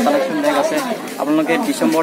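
Speech: a young man talking, with other voices in the background.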